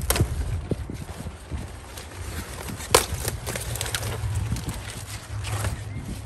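A cauliflower plant being handled at harvest: its leaves and stalk give a scattering of sharp snaps and clicks, the loudest about three seconds in, over a low steady rumble.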